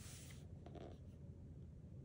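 Faint rustle of a hand sliding over and smoothing a freshly turned paper page of a hardcover picture book, mostly in the first half second.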